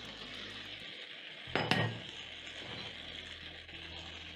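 Sauce sizzling steadily in a non-stick frying pan as fried potato slices are tipped in from a bowl, with one sharp clink about one and a half seconds in.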